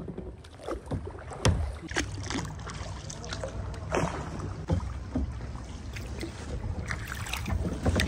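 Kayak paddle strokes dipping and splashing in the water, irregular splashes and drips a second or so apart, over a low wind rumble on the microphone.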